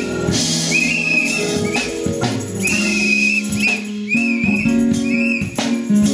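Live gospel band playing: organ and electric keyboard chords over a drum kit, with a high, wavering, whistle-like line of notes on top.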